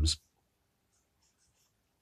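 Felt-tip marker writing on notepad paper: a few faint, short scratching strokes.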